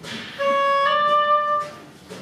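Oboe playing two sustained notes: a short one, then one slightly higher held for about a second. They form the two-note motif that stands for a person's doubt about going to war again.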